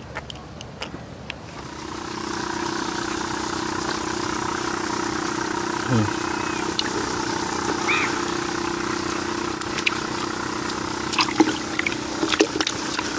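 Small air pump humming steadily and bubbling the water in a bucket of live fish, starting about two seconds in. Near the end come a few splashes and knocks as a hand works in the water.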